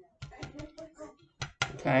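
Quick, irregular light taps and clicks of fingertips and fingernails pressing vinyl number stickers onto a painted vinyl record.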